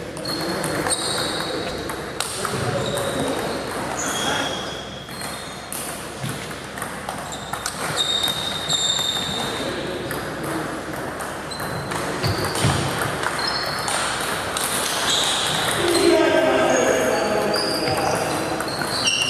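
Table tennis rallies: the ball clicks off paddles and table in quick back-and-forth exchanges, each hit ringing briefly in the hall. Voices from around the hall run underneath and are loudest near the end.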